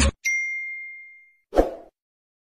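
A notification-bell sound effect: one bright ding that rings and fades over about a second, followed by a short pop about a second and a half in.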